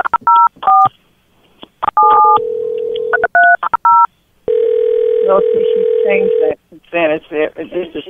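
Touch-tone telephone keypad dialing a number, heard down a phone line: several quick runs of two-note beeps, a short steady tone, then more digits. A steady ring tone lasting about two seconds follows, the call ringing through, and a voice comes on near the end.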